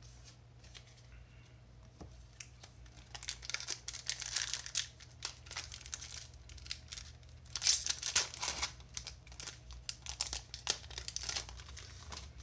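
Foil wrapper of a Magic: The Gathering booster pack being torn open and crinkled by hand: a long run of irregular crackly rustles that starts a few seconds in and is loudest about two-thirds of the way through, over a steady low hum.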